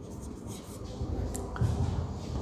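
Chalk scratching faintly on a blackboard in short strokes as words are handwritten.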